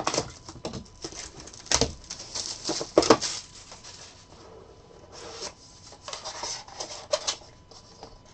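Hands stripping shrink wrap from a sealed trading-card box and handling the cardboard boxes: crinkling plastic and scraping cardboard, with two sharper knocks about two and three seconds in.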